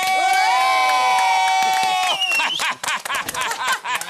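A small group of adults cheering together in long, held shouts. Just after two seconds there is a brief higher shout, followed by a quick run of sharp hand slaps and short yells as they high-five.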